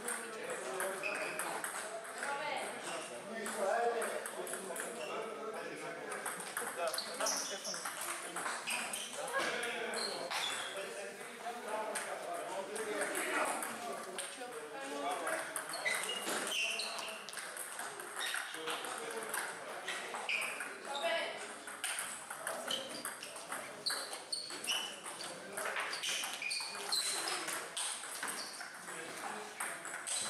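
Table tennis ball being struck back and forth in doubles rallies: short, sharp clicks of the ball off the paddles and bouncing on the table, with pauses between points. Indistinct voices talk underneath.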